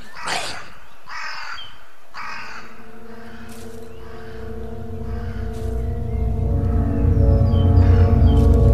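A bird cawing harshly, three short calls in the first two and a half seconds. Then a film-score drone of held tones and a low rumble swells steadily louder.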